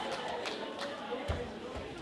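Murmured chatter from a theatre audience, with a few scattered claps and a low thump a little over a second in.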